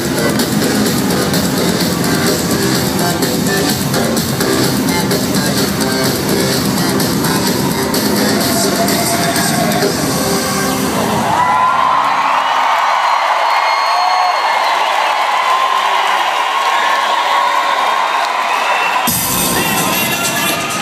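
Live arena concert: loud electronic dance-pop music with a driving beat through the PA. About halfway through, the bass and beat suddenly drop out, leaving crowd cheering and screaming over a thinner high layer. The low end comes back near the end.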